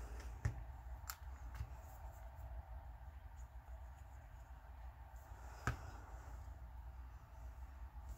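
Quiet room with a faint low hum and a few small clicks and taps from hands handling paper and a glue bottle; the sharpest click comes about two-thirds of the way through.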